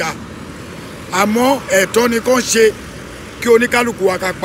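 A man talking in short phrases, with pauses between them filled by a steady background hum.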